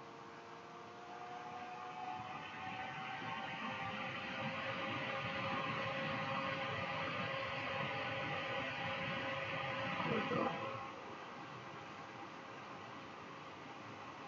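A long draw on a dual-coil RDA on a box mod firing at 25 watts: a breathy hiss of air and vapour through the atomizer that builds over several seconds and stops about ten seconds in.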